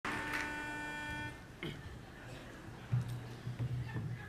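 A single steady reed note about a second long, blown on a pitch pipe to give the a cappella group its starting pitch, followed by soft low hums as the singers find their notes.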